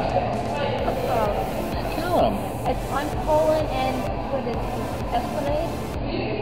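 Indistinct background chatter of voices in a café over a steady hiss of room noise.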